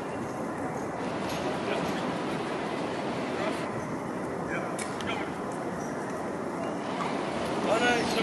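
Busy street ambience of people talking, with an Alstom Citadis light rail tram rolling slowly toward the listener on its tracks. A voice stands out briefly near the end.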